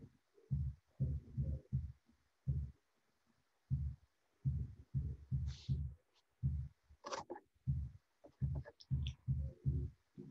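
A run of soft, low thumps at roughly two a second, with a short pause about three seconds in: a paintbrush dabbing dots of watercolour onto paper lying on a table.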